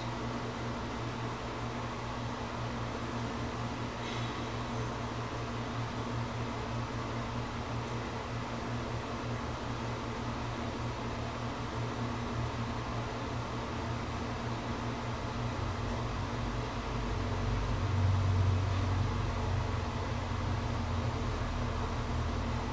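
Steady low electrical hum over a fan-like hiss. A deeper rumble swells about three-quarters of the way through, then eases off.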